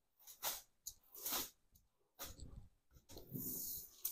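A dry cloth rubbing over aluminium foil laid on a wetted table, in four swishing strokes about a second apart. The foil is being smoothed flat so that it sticks to the wet tabletop.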